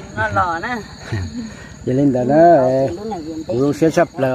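People talking, loudest about halfway through, over a steady high-pitched drone of insects.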